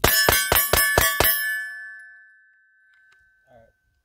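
Smith & Wesson M&P 2.0 Metal pistol fired in a fast string of about six shots, roughly a quarter second apart, with steel targets ringing as they are hit. The ringing fades out over the next two seconds.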